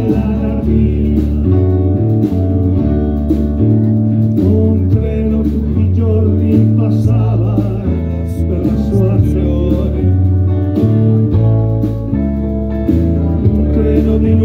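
Live rock band playing: electric guitar, electric bass and drums, with low bass notes changing about once a second.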